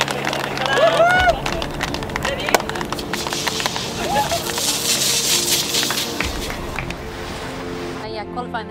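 Shouts, whoops and laughter over background music, then from about three seconds in a hissing spray from shaken bottles of sparkling wine, which fades near the end.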